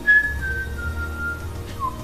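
Background film score: a slow, whistle-like melody line that holds a few notes stepping down in pitch, then a lower note near the end, over a steady low drone.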